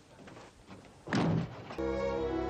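A door shutting with a single heavy thunk about a second in. Near the end, orchestral string music begins.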